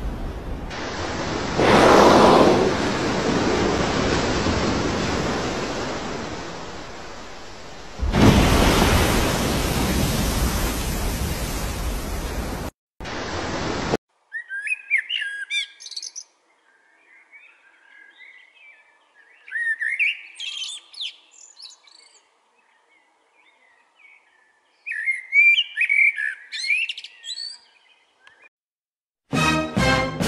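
A loud, even rushing noise that swells and fades, with a fresh surge about eight seconds in, cuts off abruptly about halfway through. It is followed by a male common blackbird singing three short phrases of rising and falling notes, a few seconds apart.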